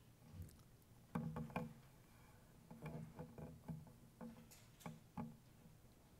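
Light clicks and knocks of communion trays and small cups being handled and passed along the pews, in a quick cluster about a second in and then scattered through the rest.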